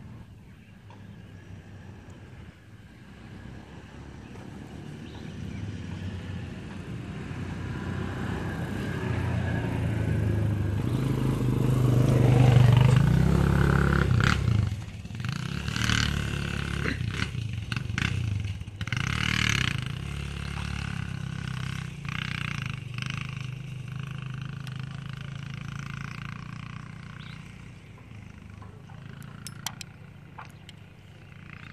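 An engine running, growing louder to its peak about twelve seconds in and then slowly fading away.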